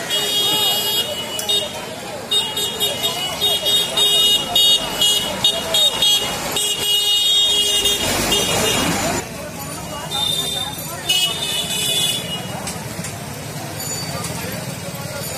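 Busy street-market traffic: people talking amid passing motorbikes, bicycles and a truck, with high-pitched horn toots sounding on and off. There is a loud rushing pass about eight seconds in.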